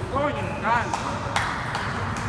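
Short bursts of untranscribed voices in a busy table tennis hall, with one sharp click of a ping-pong ball a little after halfway.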